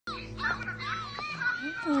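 A young child's high voice babbling over a low held chord of background music that stops a little past the middle.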